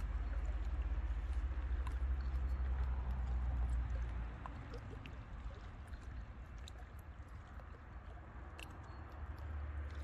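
Small waves lapping and splashing against shoreline rocks. Wind buffets the microphone as a low rumble for the first four seconds, eases off, and comes back near the end.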